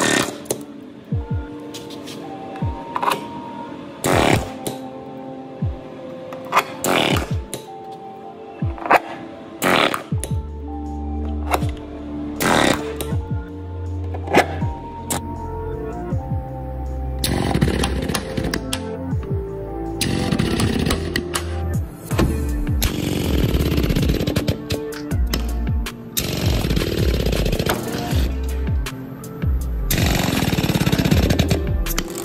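Background music with a heavy beat over blind rivet gun work: sharp snaps through the first ten seconds as rivets are set, then from about seventeen seconds a loud continuous power-tool noise.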